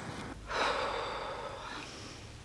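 A man's loud, breathy gasp, starting suddenly about half a second in and lasting about a second.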